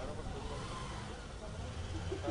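Steady low rumble of a car engine running, with faint voices in the background.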